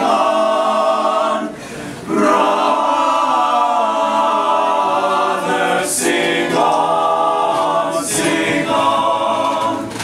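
Male chorus singing in harmony, holding long sustained chords, with a brief break for breath about a second and a half in before the singing resumes.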